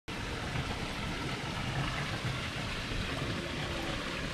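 Steady rush of running water from a small waterfall.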